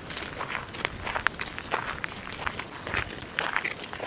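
Footsteps of a person walking, a couple of steps a second.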